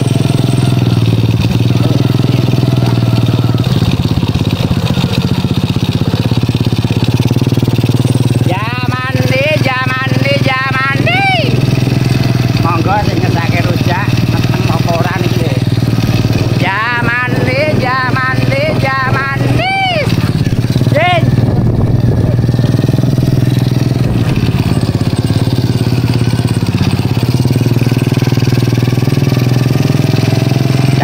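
Small motorcycle engine running steadily while being ridden, a continuous low hum. A man's voice comes in twice, near a third of the way through and again past the middle.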